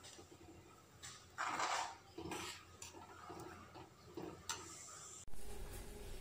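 Faint clinks and a short scrape of a spoon against a metal kadai as thick dal is stirred, loudest about a second and a half in.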